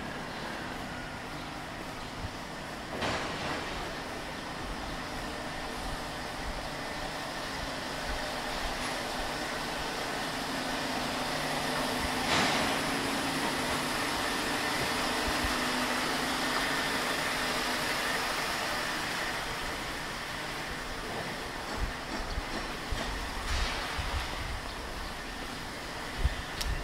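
Side-street traffic ambience: a steady vehicle rumble that slowly swells to its loudest midway and fades again, with a faint steady whine and a couple of sharp knocks about 3 and 12 seconds in.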